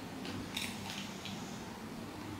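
A person drinking water from a glass: three short, soft sips or swallows about a third of a second apart, close to the microphone.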